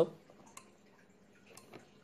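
Quiet room with a few faint, short clicks: one about half a second in and two more close together around a second and a half in.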